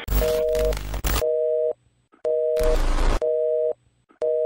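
Telephone busy signal: a two-tone beep sounding about once a second, four times, cut into by loud bursts of static hiss at the start and again about two and a half seconds in.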